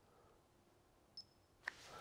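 Near silence with one faint, short, high beep just over a second in, followed by a faint click: a coating-thickness gauge pressed to the sanded primer on a car roof, signalling a reading.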